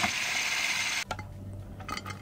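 Plastic clicks and knocks of a food processor bowl being handled and tipped out, with a steady hiss that stops abruptly about a second in.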